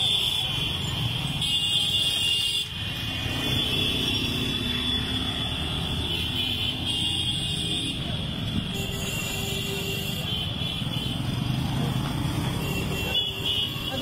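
Motorcycle engines of a large convoy running steadily on the move, with a steady high-pitched tone over the low engine rumble.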